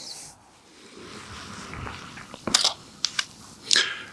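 Handling noise from a camera on a tripod being adjusted: soft rustling with a few sharp clicks in the second half.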